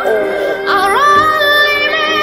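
A recorded pop ballad: a woman's voice holds long high notes. It dips at the start, then glides up into a long held note about a second in, over a sustained accompaniment.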